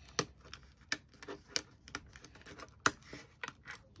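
Irregular sharp clicks and taps of clear plastic zip envelopes being handled and fitted onto a small binder's metal rings. The loudest click comes a little before three seconds in.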